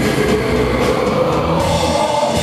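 Live hardcore band playing loud through a PA, recorded rough from the crowd, with a held note that slides slightly up and back down.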